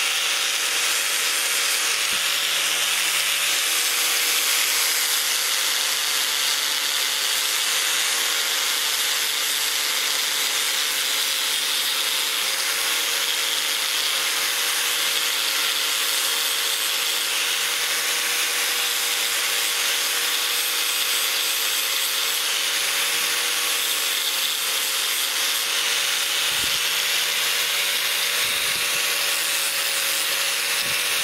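Angle grinder running steadily with a slightly wavering motor whine, its disc grinding and smoothing the edge of an aluminium knife blank. A couple of faint knocks come near the end.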